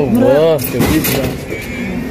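A person's voice sounds briefly in the first half second, wavering up and down in pitch without clear words. It is followed by a steady low rumble of background noise.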